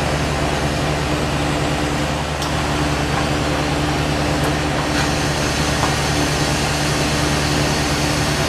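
Oxygen-propane glassworking torch burning steadily: a constant rushing hiss with a steady low hum underneath.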